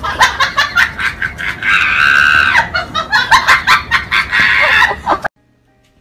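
Soundtrack music with a busy, choppy run of short sharp sounds and a held high note about two seconds in. It cuts off abruptly about a second before the end.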